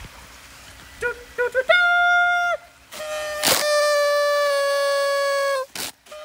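Party horn blown: a few quick toots, then a held buzzy note, then a longer steady note of about two seconds that sags a little in pitch. A sharp noisy burst comes between the two long notes and another just before the end.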